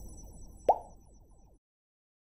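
Logo-animation sound effects: the fading tail of an earlier hit, then a single short pop with a quick upward sweep in pitch about a third of the way in, which dies away within a second.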